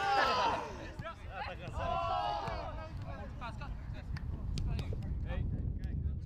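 Men's voices calling out in a few short bursts, over a low rumble, with a few sharp clicks near the end.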